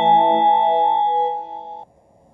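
Train-approach chime from a JR East station's ATOS public-address system (Utsunomiya-type standalone): the last chord of the electronic chime rings on steadily and cuts off sharply near the end.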